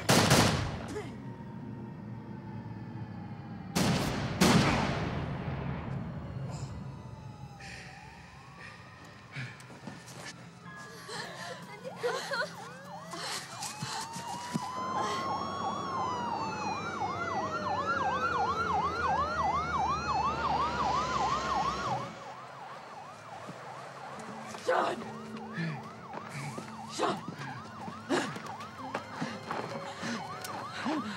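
Several police car sirens wail together, their pitch sweeping slowly up and down, with one in a fast yelp of about three cycles a second. They cut off abruptly about two-thirds of the way through. Two loud hits come before them, near the start and about four seconds in.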